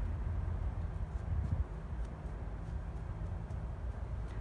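Steady low outdoor rumble, with a few faint soft taps of a hand patting down loose garden soil over sown seeds.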